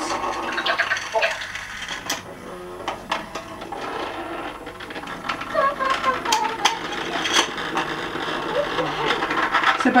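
Battery-powered Zuru Hamsters in a House toy hamster buzzing and rattling as it vibrates through the plastic playset, setting off the playset's electronic sound effects: short pitched electronic sounds and many small clicks over a faint steady hum.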